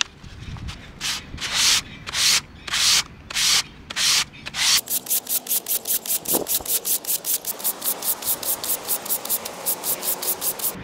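Nickel sheet being hand-sanded with P400 sandpaper wrapped around a cork block: about six long, slow strokes, then from about five seconds in a fast run of short strokes, about five a second.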